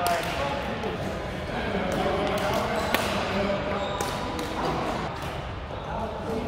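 Badminton rackets striking a shuttlecock: a few sharp pops, the clearest about three seconds in, over indistinct voices in a large hall.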